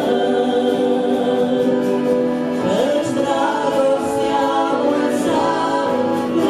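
Christian song in Romanian sung by two women, with long held notes that slide between pitches.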